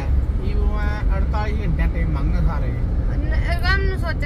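A woman talking inside a car cabin over the steady low rumble of the car's road and engine noise.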